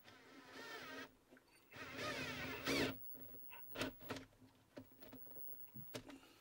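Cordless drill-driver running in two bursts of about a second each as it works up into the wooden underside of a desk, followed by a few short clicks and knocks.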